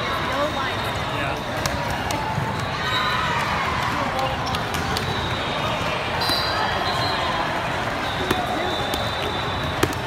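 Busy sports-hall ambience: the chatter of many people across the hall, with volleyballs being hit and bouncing as short sharp smacks scattered throughout.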